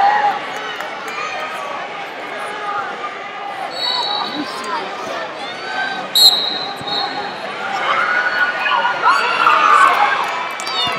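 Coaches and spectators shouting over one another in a large hall during youth wrestling bouts. Two short, high referee whistle blasts come about four and six seconds in, the second the loudest.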